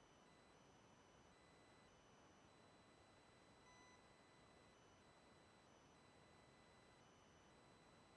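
Near silence: a faint hiss with faint, high-pitched tones that switch on and off.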